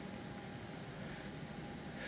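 Laptop keyboard keys clicking faintly in a quick run of about a dozen presses during the first second and a half, as the Enter key is tapped repeatedly in a terminal, over a steady low hum.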